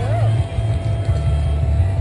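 Race-finish ambience: a public-address system carrying music and an indistinct voice, over a heavy, uneven low rumble.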